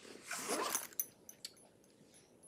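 A soft breath-like rustle close to the microphone, followed by three tiny clicks, then near silence.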